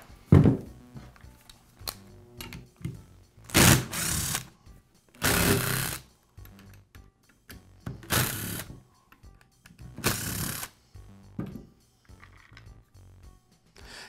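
A thump as the belt sander is set down on the bench. Then a cordless driver runs in about five short bursts, backing out the screws that hold the sander's belt housing cover.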